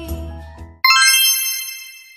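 Background music fades out, then just under a second in a single bright ding sound effect chimes and rings away.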